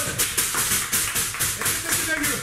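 A small audience clapping quickly as a live rock song ends, with a few whoops.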